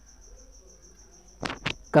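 An insect trilling faintly in the background: a high, evenly pulsed trill of about eight pulses a second, with a couple of short clicks near the end.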